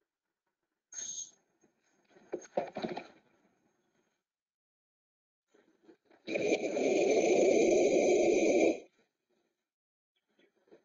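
Recorded gorilla display: a few short knocks of chest-beating between one and three seconds in, then a loud, harsh vocal outburst of about two and a half seconds that stops abruptly.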